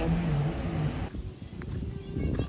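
A woman's voice holding a low, drawn-out sound for about a second, dipping slightly in pitch, which then cuts off suddenly, leaving faint background noise.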